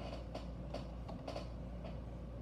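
Faint light clicks and taps as a die-cast toy car is handled and lifted off a mirrored display turntable, over a steady low hum.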